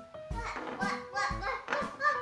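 A young girl laughing over background music.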